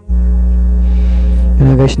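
A loud, steady low hum with a few even overtones, starting abruptly and holding level throughout; a man's voice comes in over it near the end.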